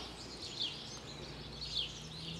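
A few short, falling bird chirps over quiet outdoor background noise.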